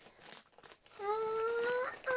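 Plastic wrapping crinkling faintly, then about a second in a cat lets out a long, steady meow held at one pitch.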